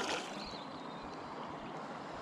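River water flowing, a steady even rush with no distinct splashes or reel clicks.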